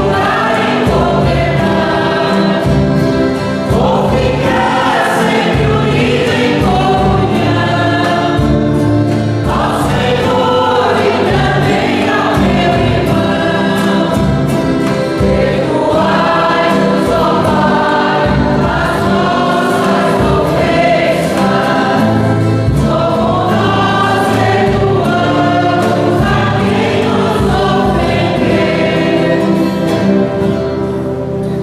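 A church music group singing a hymn in chorus, accompanied by strummed acoustic guitars and a piano accordion, sustained without pause.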